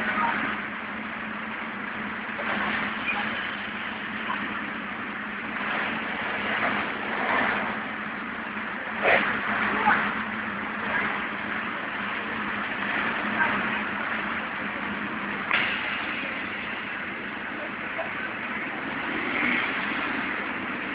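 Street traffic noise with an engine running steadily underneath, and a few short sharp knocks around the middle.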